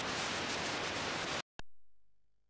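Static hiss from an unrecorded stretch of VHS tape, an even rushing noise that cuts off suddenly about one and a half seconds in. A single short click follows, then near silence.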